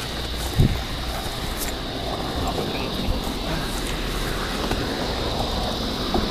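Body-worn camera microphone picking up handling and movement noise as the wearer hauls a man to his feet, with one low thump about half a second in, over a steady high-pitched hum.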